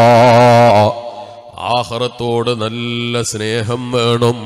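A man chanting in a melodic, sung style: a long held note with a wavering pitch that breaks off about a second in, then, after a short pause, more sung phrases.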